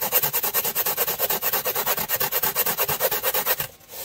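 Coarse 36–40 grit sanding disc rubbed quickly back and forth by hand in grooves carved into a foam dashboard form, about a dozen strokes a second. The rubbing stops shortly before the end.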